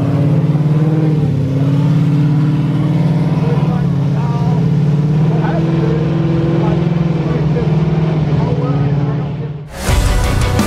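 Ford Mustang GT's 5.0 V8 engine running loud, its pitch climbing in a few slow sweeps, with people talking over it; the sound cuts off just before the end.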